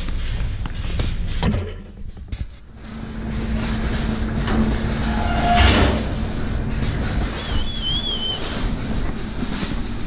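Milking shed noise: a steady low hum from the milking machinery sets in after a brief lull about two seconds in, with knocks and clatter as cows file along the concrete platform. A short warbling whistle sounds near the end.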